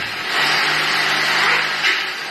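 Cordless drill running steadily under load with its bit pressed into the base of a light-gauge metal stud, driving in a fastener. It runs for about a second and a half after a brief dip just in, with a short peak near the end.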